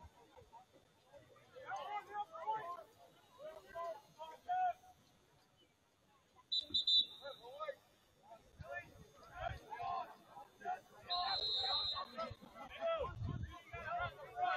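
Referee's whistle blown twice, a short blast about six and a half seconds in and a longer blast about eleven seconds in, over players' shouting on the field.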